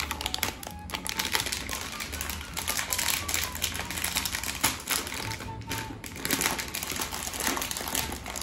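Plastic packet crinkling and crackling in quick runs as it is handled and opened, over background music.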